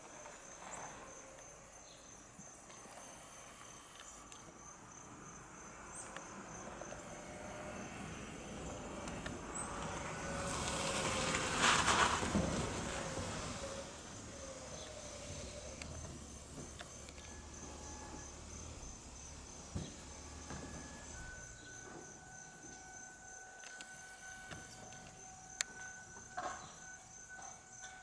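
Outdoor insect chirring, a faint, steady high-pitched pulsing trill like a cricket's. About nine seconds in, a broad rushing noise swells up, peaks around twelve seconds and fades by fourteen.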